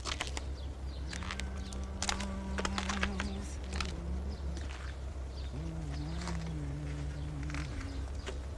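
A man humming a few low, held notes in two short phrases, with a few light clicks and knocks around them.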